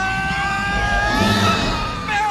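A long cry held on one pitch, rising at the start and fading out near the end, with low rumbling battle noise beneath.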